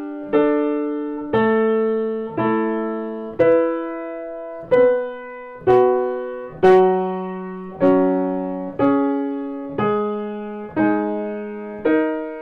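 1904 Bechstein Model A grand piano: intervals in the middle octave struck one after another, about one a second, each held and left to ring down. The tuner is checking the fifths, fourths and thirds of the temperament he has just set, one between equal temperament and Kellner with slightly narrowed fifths and purer home keys.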